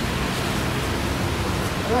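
Steady rushing background noise of nearby road traffic.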